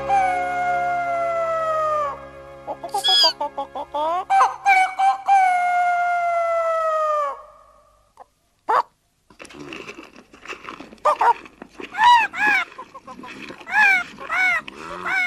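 A rooster crowing on a cartoon soundtrack: two long drawn-out crows that slide down in pitch at the end, with a short rising call between them, over a steady low musical drone. After a brief silence and a single click, a voice begins in short calls that rise and fall in pitch near the end.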